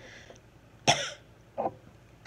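A woman coughing: one sharp, loud cough about a second in, followed by a shorter, weaker one.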